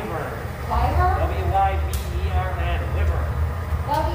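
Low, steady rumble of a glassblowing hot shop's gas-fired furnaces, growing louder about a second in, with people talking over it and a single brief click near the middle.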